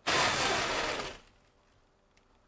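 A person blowing a long breath of air at a gold foil toy pinwheel to spin it: one rushing burst of air that starts sharply and dies away after about a second.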